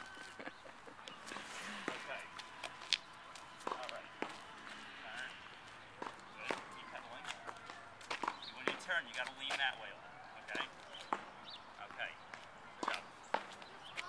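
Footsteps and scattered light knocks on a paved path, with faint voices that are busiest just past the middle.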